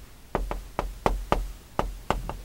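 Chalk tapping and clicking against a chalkboard as Korean letters are written, a quick run of sharp taps, several a second.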